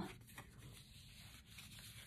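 Faint rustle and rub of paper as a vintage-paper journal card is slid into a paper pocket in a handmade junk journal, with a small tick just under half a second in.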